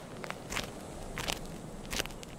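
Footsteps walking away: a few separate steps spread through the two seconds.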